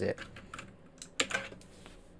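Computer keyboard typing: a handful of separate key clicks in the first second and a half.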